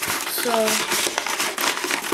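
Paper packing crinkling and rustling continuously as hands rummage through a cardboard parcel.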